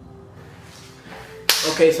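Soft background music, then a single sharp hand clap about one and a half seconds in.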